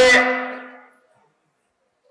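A man's voice, chanting a sermon through a public-address system, ends just after the start and fades out over about a second. Then there is dead silence until the end.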